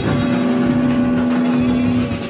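Loud free-improvised rock from saxophone, distorted electric guitar, bass and drums, a dense noisy wash with one low note held steady throughout.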